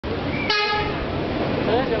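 A brief steady horn-like tone about half a second in, lasting under half a second and fading, over a background of crowd noise and voices.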